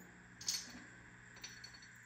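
Faint steady hum from a Longhorn El Capitan guitar amplifier, with a small click about half a second in and a few light ticks later as its control knobs are handled.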